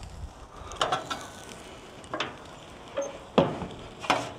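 Metal clinks and clacks from a spatula working on a gas grill's grate and side shelf, about five sharp knocks in all, the loudest near the end as the grill lid is shut.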